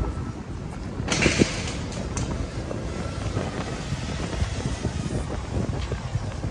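Wind buffeting a phone's microphone over outdoor open-air ambience, as a low rumble with a brief louder rush about a second in.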